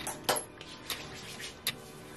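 Light clicks and taps of a skincare dropper bottle being handled, its dropper and cap knocking against the bottle: about four sharp ticks in two seconds.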